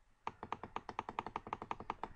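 Computer mouse clicking rapidly in an even run, about twelve clicks a second, stepping a number setting up or down.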